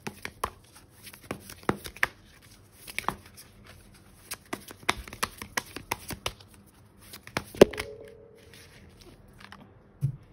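Oracle card deck being shuffled by hand: a quick, uneven run of card clicks and slaps, with one sharper, louder slap about three-quarters of the way in, after which the clicks thin out.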